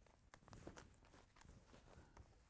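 Faint rustling and a few soft ticks of balls of yarn being handled and put into a cloth bag.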